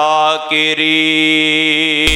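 A man chanting a Quranic verse in melodic recitation style, his voice drawn out on long held notes.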